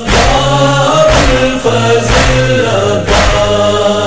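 Male chorus chanting a noha, a Shia Muharram lament, in unison, over a heavy beat about once a second.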